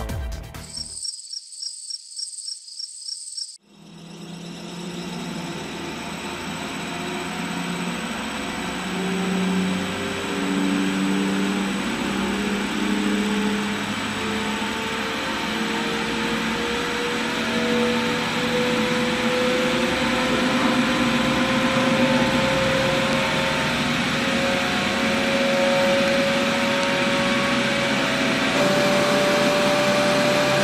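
An electric motor driving a copper-wound experimental generator, running up to speed: a steady rushing hum whose whine climbs slowly in pitch, over a high hiss. Before the machine starts, about four seconds in, there is a brief high pulsing tone.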